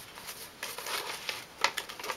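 Paper rustling as a cut pop-up card is handled and turned over, with a few short crisp crackles of the sheet, mostly in the second half.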